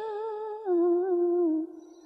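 A single voice chanting Vietnamese verse in the slow ngâm style, drawing out the end of a line on one held, slightly wavering note. The note steps down in pitch about half a second in and fades away near the end.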